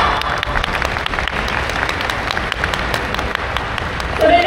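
Audience applauding in a large sports hall, a steady patter of many hands with sharp single claps standing out. It begins as a loud group shout breaks off at the very start.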